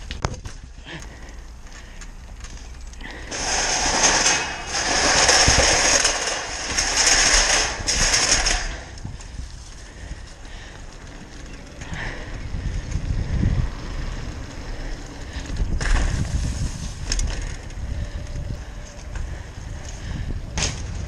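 Mountain bike being ridden hard over rough urban ground and paving: tyres rolling and the bike rattling, with wind on a helmet-mounted microphone. It is loudest and hissiest from about three to nine seconds in, and there are a couple of sharp knocks from the bike near the end.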